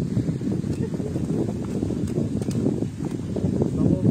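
Wind rumbling and buffeting on the microphone, with a few faint clicks about halfway through.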